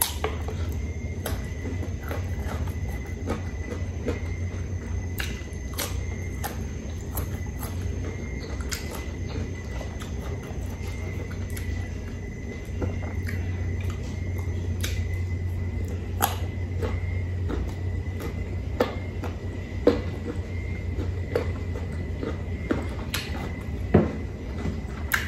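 Close-miked chewing of crisp, unripe Indian mango slices dressed with shrimp paste: irregular crunchy clicks as the firm fruit is bitten and chewed, over a steady low hum and a faint steady high whine.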